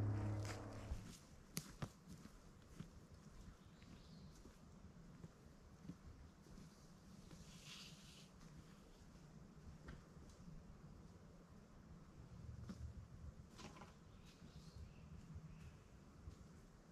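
Near silence: faint outdoor ambience with a few scattered faint clicks and ticks.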